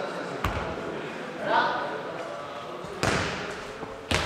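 Footnet ball bouncing once on the wooden sports-hall floor about half a second in, then struck much harder about three seconds in, each hit echoing in the hall.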